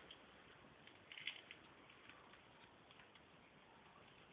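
Near silence: room tone, with a few faint soft clicks a little over a second in.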